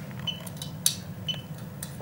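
A few light metallic clicks and clinks as a hand cuts a wire at a small circuit board's screw terminals, the sharpest click a little before halfway.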